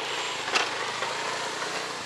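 A motor vehicle engine idling steadily, with one short click about half a second in.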